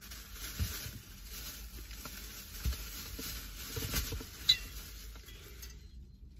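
Crinkly rustling of a shopping bag as items are dug out of it, with a few soft knocks of things being handled.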